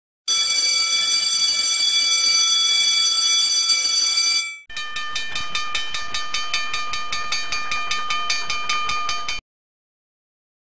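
A mechanical twin-bell alarm clock rings continuously for about four seconds. After a short break, a brass hand bell is rung in quick, even strokes, about four a second, like a school bell, and stops suddenly near the end.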